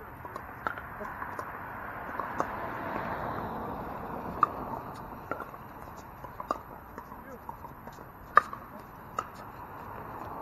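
Pickleball paddles striking the hard plastic ball in a rally: a string of sharp, short pops at irregular intervals, the loudest near the end.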